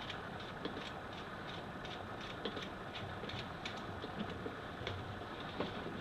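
Faint, scattered small clicks and handling noise from a pump shotgun as its magazine cap is screwed on, over a steady background hiss.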